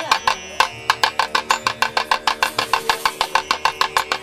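Rapid drum beats in an even rhythm, quickening to about seven strokes a second, over a faint steady held tone.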